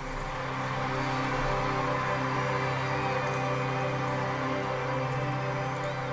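Music from a live concert recording: one sustained chord held steady and unchanging, with a haze of crowd noise behind it.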